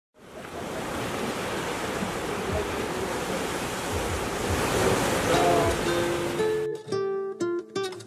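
Sea surf washing over rocks, a steady rush, that cuts off suddenly a little over a second before the end, when plucked acoustic guitar notes begin.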